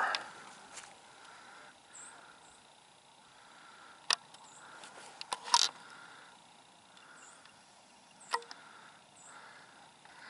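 Quiet riverside outdoor ambience with faint, short high-pitched chirps scattered through it and four sharp clicks, the loudest about five and a half seconds in.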